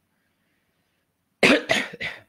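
Near silence, then about one and a half seconds in a person coughs three times in quick succession.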